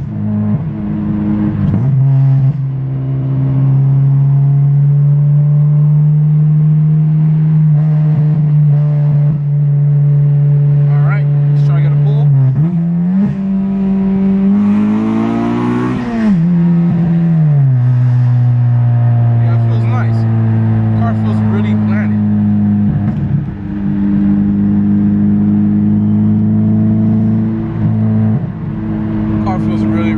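Honda Civic Si's 2.4-litre four-cylinder engine heard from inside the cabin while driving: a steady drone, then about twelve seconds in the revs dip, climb for about three seconds and fall back, before settling into a steady drone again. The clicking noise the owner used to hear is gone.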